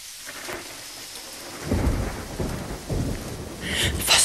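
Rain and thunder sound effect fading in as a song's intro: steady rain with low rolls of thunder about two and three seconds in. Music begins right at the end.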